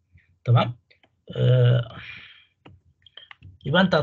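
A man's voice making two short, drawn-out hesitation sounds, followed by a few faint clicks from a computer mouse or keyboard about three seconds in.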